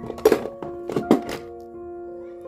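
Background piano music, with several sharp knocks in the first second and a half from a pair of pliers and copper ring pieces being handled on the stone bench.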